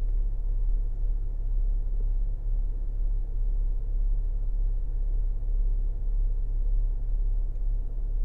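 A steady low rumble with no distinct events, the low background hum of the store's ambience.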